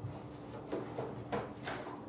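Three light, sharp clicks of a small plastic toy gumball machine being handled, its parts knocking together.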